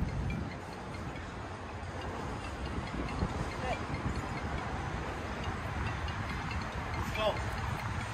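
Steady low rumble and hiss of outdoor ambience, with a faint voice briefly a couple of times.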